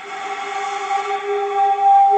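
Concert flute played by a beginner sounding one held G, breathy with plenty of air noise, growing louder as it goes: the student's first successful G on the flute.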